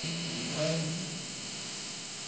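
A man's voice singing a held, level note for about the first second, then fading, over a steady hiss.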